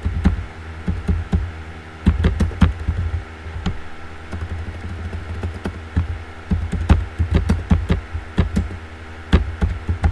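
Computer keyboard typing: irregular runs of quick key clicks, with a pause of about a second near two seconds in. A steady low hum runs underneath.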